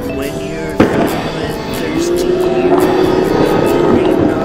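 Music soundtrack with a single sharp skateboard clack on pavement about a second in, then the music grows louder with gliding pitched lines.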